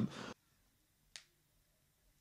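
Near silence, broken once by a single short, sharp click about a second in.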